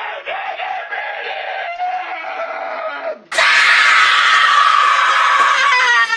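A boy's voice shouting, then a sudden, long, very loud scream starting about halfway through that falls in pitch at its end.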